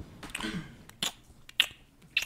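Wet mouth clicks and smacks made close to a microphone: a person imitating squelching sex noises. There are a handful of sharp, irregularly spaced clicks.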